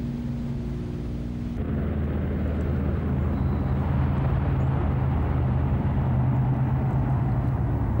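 Twin Pratt & Whitney R-2800 eighteen-cylinder radial piston engines of a Curtiss C-46 Commando running in flight, a steady low drone. About a second and a half in it becomes fuller and a little louder.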